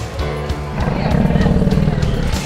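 Background music with a low, rumbling growl coming in about a second in, from the animatronic raptor costume.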